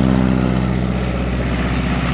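A de Havilland DHC-2 Beaver's radial engine and propeller at takeoff power as the plane lifts off the runway: a steady, deep drone that eases slightly in loudness.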